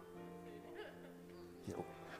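Faint background music: a soft chord held steady.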